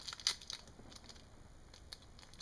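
Faint handling noises while working modelling clay: a few small crackling clicks in the first half second, then low room tone with one more light click near the end.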